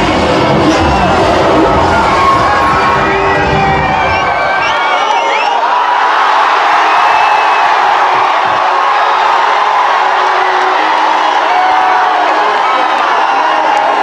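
Large crowd of fans cheering and shouting, with whistles rising and falling above the roar. Bass-heavy music plays under it for the first five seconds or so, then cuts out while the cheering carries on.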